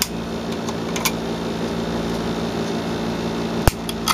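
Side cutters snipping the plastic cable ties that hold wires, as a few sharp snips: the loudest about a second in and another near the end, over a steady low hum.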